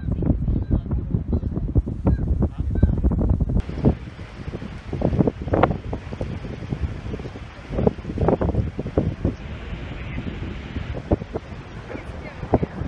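Wind buffeting a phone's microphone in uneven gusts, with a change in the sound partway through where the footage is cut.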